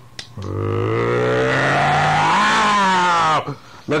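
A man's voice making one long, low animal-like roar, imitating the animals in a story, about three seconds long; its pitch rises past the middle and then falls away.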